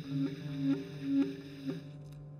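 Live jazz duo of piano and clarinet playing a slow low-register passage: short repeated notes, some swelling as they are held, over a sustained low tone.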